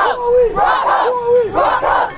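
Youth football team's call-and-response chant: one voice calls "Who are we?" and the players shout back "Broncos!" together, twice in quick rhythm.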